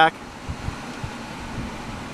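Steady, even rushing noise of a car's climate-control blower running in the cabin of a Lexus GX 470, with a few faint soft knocks.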